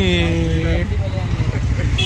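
A man's voice draws out a long, falling sound in the first second, over a loud, steady low rumble of street traffic.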